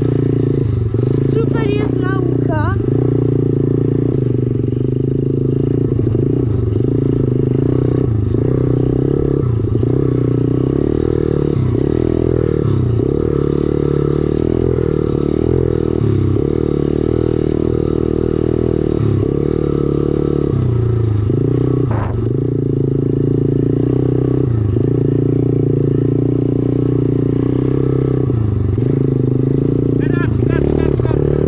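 Dirt bike engine running under throttle while riding over a rutted dirt track, its note dipping and picking up again every couple of seconds. A single sharp knock comes about two-thirds of the way through.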